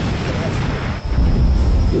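Deep, loud rumble of T-72B3 main battle tanks driving past in column, their diesel engines swelling a little after a second in.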